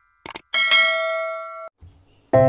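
Two quick mouse clicks, then a bright bell ding that rings for about a second and cuts off abruptly. This is the sound effect of a subscribe-button animation, the click and the notification bell.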